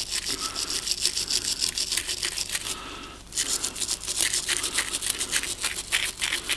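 Small wire brush scrubbed quickly back and forth over the corroded aluminium housing of a diesel injection pump, rasping off crusty aluminium oxide. Two bouts of fast strokes with a short break about three seconds in.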